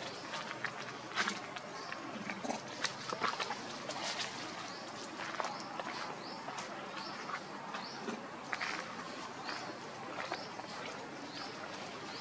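Outdoor ambience around a group of macaques: scattered light crackles and taps of movement on a leaf-strewn dirt path. From about five seconds in, a short high chirp repeats roughly twice a second.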